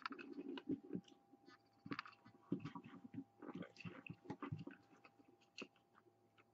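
Faint rubbery rustling and scraping of a large latex Trick or Treat Studios Gingerdead Man mask being pulled down over a head, in uneven spells with small clicks, stopping near the end.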